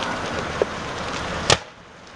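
Fire-department two-way radio hissing on an open channel right after a transmission, cut off by a squelch click about one and a half seconds in, leaving a much quieter background.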